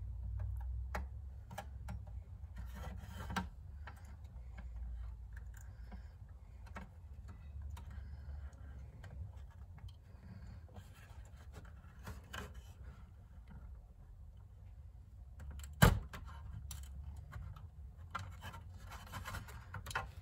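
A razor blade scraping and slicing through plastic air-line tubing held in a plastic miter box: faint repeated rubbing and small clicks, with one sharp click about 16 seconds in. A low steady hum runs underneath.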